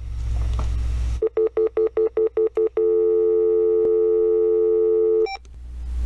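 Telephone line: a low hum for about a second, then about ten quick keypad beeps as a phone number is dialed, followed by a steady tone for about two and a half seconds as the call goes through, and a brief high beep near the end.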